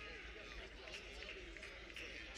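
Faint murmur of distant voices in a large gym hall, with a low steady hum of the room.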